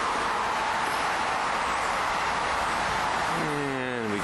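Steady hiss of passing road traffic, mostly tyre noise. Near the end a vehicle's engine note comes through, falling in pitch.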